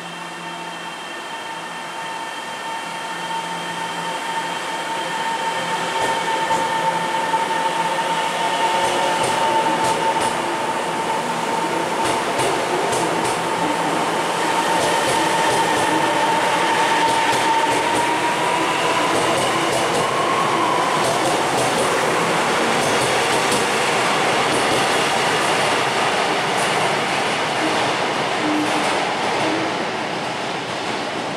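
Taiwan Railway EMU700 electric multiple unit pulling out of an underground station. Its running noise grows louder over the first several seconds and stays loud as the cars go by. A steady electric whine runs through it and climbs a little in pitch about twenty seconds in, with clicks from the wheels on the rails.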